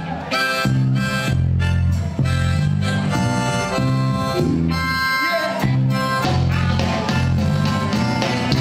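Live ska band playing an instrumental passage: horns carry the melody over a bouncing bass line, guitar and drums.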